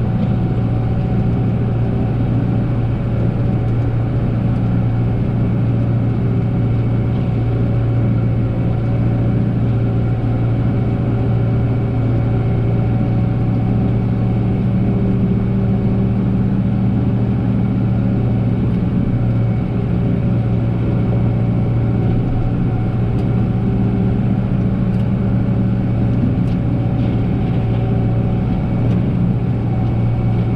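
New Holland 7740 tractor's diesel engine running steadily under load, driving a rotary brush cutter through tall grass, with an even, unchanging drone.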